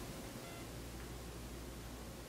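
Room tone: a steady low hum and faint hiss, with no distinct events.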